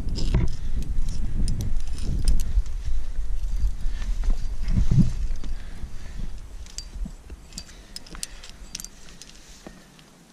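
Climbing hardware on a harness, carabiners and gear, clinking and jangling in light metallic clicks as the climber moves up the rock. Low rumbling noise on the microphone is strong in the first half and dies away from about six seconds in.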